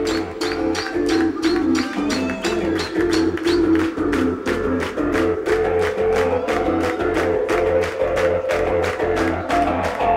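Live band playing an instrumental piece: drums keep a quick, even beat of about four or five strokes a second under sustained, steady chords.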